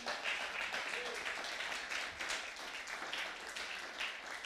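A congregation applauding, many hands clapping softly and steadily.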